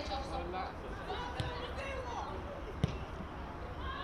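Live football-pitch sound: players' shouts and calls, with a single sharp thud of the ball being kicked nearly three seconds in and a softer thud about a second and a half in.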